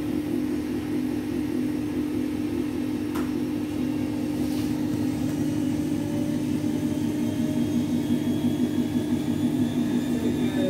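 Samsung WF80F5E0W2W front-loading washing machine running its final spin, a steady motor hum at an even pitch that grows slightly louder in the second half.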